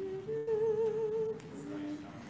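A single voice humming a few held notes: a short one, then a longer wavering one, then a lower one near the end. This is the sound of a cantor sounding the starting pitches for an unaccompanied church choir.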